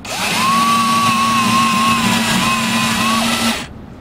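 Boat trim tab actuator motor running as the tabs are driven up, a steady whine with a slightly wavering pitch that cuts off about three and a half seconds in, when the actuator rods are retracted.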